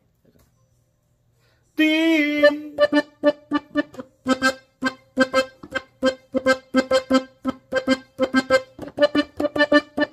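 Pedraza three-row diatonic button accordion in G. After a brief silence it plays one held chord about two seconds in, then short, detached chords in a steady rhythm of about three a second.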